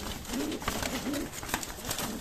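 Domestic pigeons cooing in a loft, in short repeated phrases, with a few sharp clicks and knocks from the wire cage being handled.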